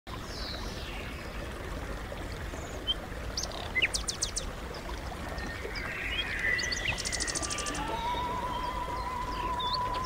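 Assorted songbirds chirping and whistling, with one quick trill, over a steady outdoor hiss. About eight seconds in, a single held musical note comes in and holds.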